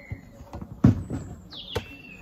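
One dull thud about a second in from a leather-and-synthetic rugby ball being handled as it is picked up off the grass. A short falling bird chirp comes near the end.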